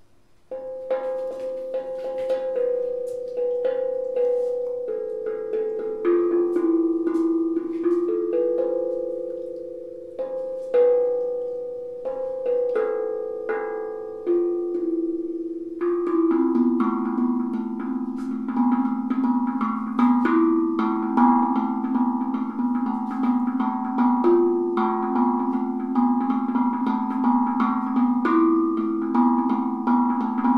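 Handmade steel tongue drum (tank drum), tuned to an A Akebono scale, struck with two mallets. Its metallic notes ring on and overlap in a slow melody. About halfway through, lower notes join and the playing grows fuller.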